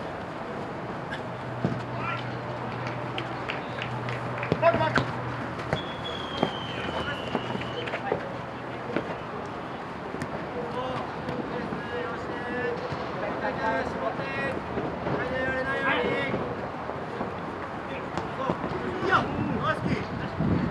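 Futsal game sounds: players shouting and calling to each other, with scattered sharp knocks of the ball being kicked, over steady outdoor background noise.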